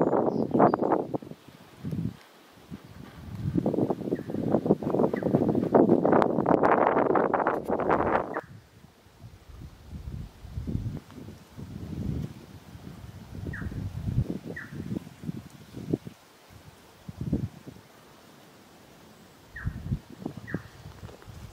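Hiker's footsteps on a sandy, rocky bush track: a few seconds of dense scuffing and rustling early on, then separate steps about one or two a second. A bird gives a few short chirps.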